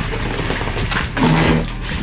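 Cardboard box flaps and plastic wrapping rustling and knocking as items are handled inside a large shipping box, with a brief low hum about a second and a half in.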